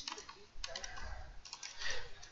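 Typing a single word on a computer keyboard: quick key clicks in two short runs.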